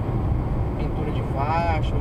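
Steady low rumble of a car's tyres and engine at highway speed on asphalt, heard inside the cabin. A man's voice comes in near the end.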